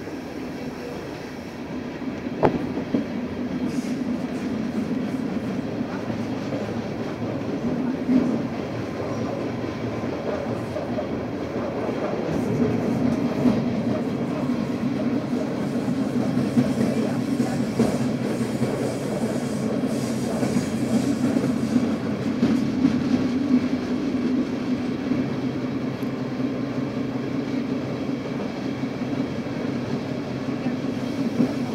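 Berner Oberland-Bahn passenger train running along the line, heard from inside the carriage: a steady rumble with a few sharp clicks from time to time.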